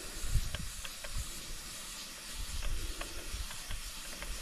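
Steady hiss of compressed air flowing through a differential cylinder leakage tester into an engine cylinder held at top dead center as the regulator pressure is turned up, with a few faint clicks.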